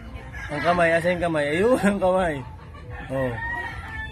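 A rooster crowing once: one long call of several joined notes starting about half a second in, followed by a shorter call near the end.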